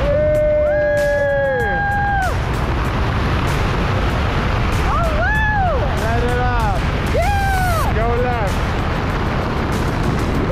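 A woman's high-pitched squeals, one long drawn-out cry at the start and several shorter ones between about five and eight and a half seconds, over heavy wind rush on the microphone during a tandem parachute canopy ride.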